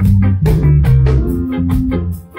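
A live rock band playing: electric guitar, bass, keyboard and drum kit, with a steady beat of drum hits under sustained bass notes and chords.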